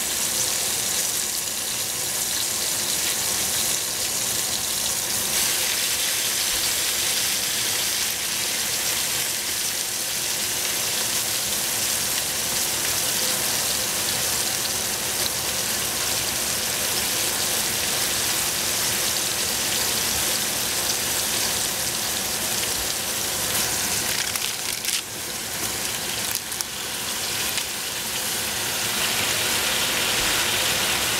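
Bok choy, mushrooms and onion sizzling in a stainless steel stockpot over a gas flame: a steady hiss. It dips briefly with a few clicks about three-quarters of the way through.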